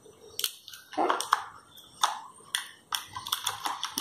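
A series of light clicks and taps as a phone's cardboard box and its accessories are handled and set down, coming closer together near the end.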